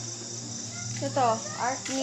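Crickets chirping in a steady high-pitched trill. A person's voice cuts in briefly about a second in.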